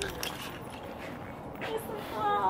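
Quiet outdoor background with faint, distant voices and a few light clicks.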